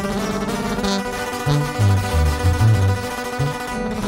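Instrumental break in a sierreño corrido: acoustic guitars, including a twelve-string, picked and strummed without vocals. A low bass line of moving notes comes in about one and a half seconds in.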